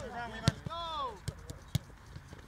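Footballs being kicked: a few sharp thuds of boot on ball, the loudest about half a second in.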